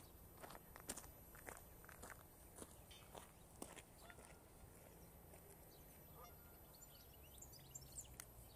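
Faint, short honks of geese scattered over an otherwise near-silent background, with a small cluster of calls near the end.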